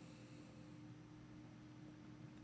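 Near silence: faint room tone and microphone hiss, with a faint steady electrical hum.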